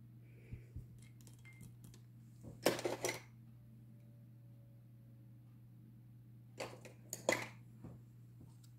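Two short bursts of clinking and rattling from small hard objects being handled, the first about two and a half seconds in and the second near the end, with a few faint clicks before them and a steady low hum underneath.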